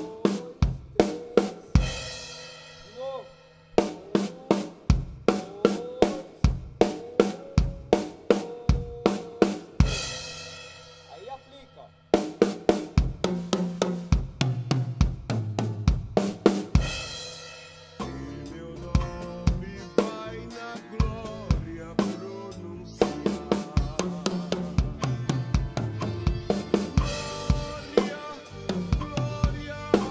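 Acoustic drum kit playing a fill slowly, step by step: sticks alternating right and left on the snare and toms with bass drum kicks between. Each run ends on a crash cymbal that rings out, three times, and after that the strokes come faster and denser.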